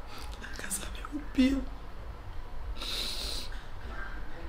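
A woman crying quietly, with a short sob about one and a half seconds in and a hissing breath about three seconds in.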